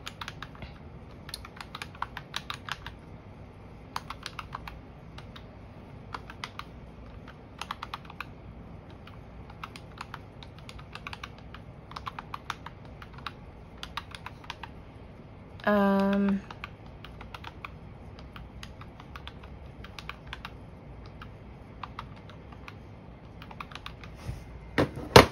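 Plastic keys of a desktop calculator being pressed, quick runs of clicks with short pauses between them as figures are keyed in and added up.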